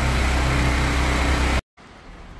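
A machine running steadily, with a low hum and a hiss over it. It cuts off abruptly about a second and a half in.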